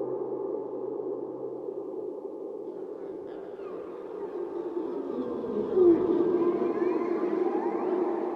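Experimental improvised electronic music with guitar: a sustained mid-pitched drone, with a low hum that fades out about two seconds in. From about three seconds thin gliding tones slide up and down over the drone, and a short louder swell comes near six seconds.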